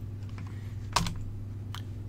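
A couple of computer keyboard keystrokes, a sharp one about halfway through and a fainter one near the end, over a steady low hum.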